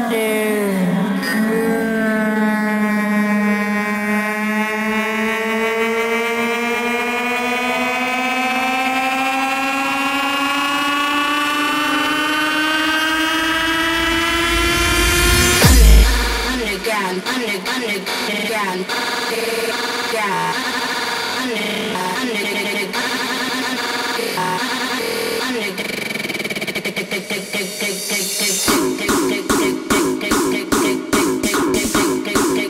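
Hardstyle electronic dance track in a breakdown: a sustained synth chord slowly rising in pitch for about fourteen seconds, then a heavy bass hit. A choppy synth pattern follows, and a steady kick-drum beat comes back near the end.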